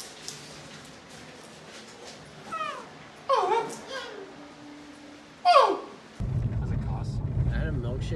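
Three short high-pitched cries over a quiet room, each sliding down in pitch; the third is the loudest. About six seconds in, a steady low rumble of a car's cabin starts.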